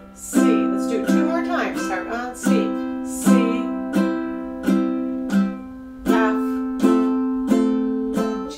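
Ukulele strummed slowly and evenly, about three strums every two seconds, each chord ringing between strokes as the player moves from G7 to C and then to F.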